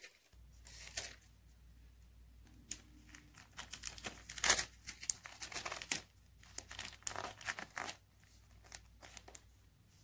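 Adhesive tape pulled off the roll and torn, with advertisement paper crinkling as it is folded and pressed around a small rock: a run of irregular rustles and rips, busiest from about four to six seconds in.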